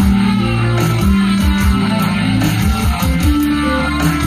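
Yamaha keytar played live with a guitar-like voice: sustained low pitched notes over a steady pulsing low rhythm.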